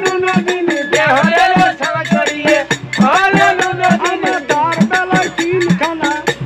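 A man singing a Bengali Satya Pir devotional folk song in a strong voice, with a barrel drum and percussion keeping a steady beat under him.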